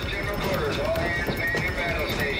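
Hurried footsteps of several crew members on a warship's metal decks and ladders, a quick irregular patter, mixed with overlapping raised voices and background music.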